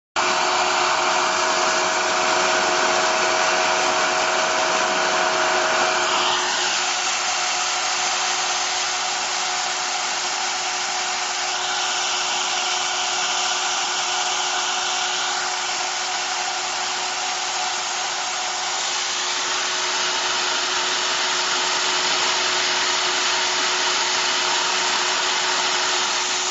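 Steady, loud machine noise: an even rushing hiss with a constant hum, shifting in tone about six seconds in and again briefly in the middle.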